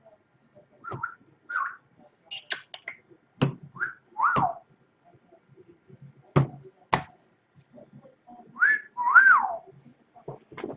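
Sharp clicks and knocks of trading cards being handled and tapped on a tabletop, with several short whistled calls that slide up and then down in pitch, the longest near the end.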